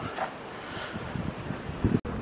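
Wind noise on the microphone over a steady outdoor background hiss.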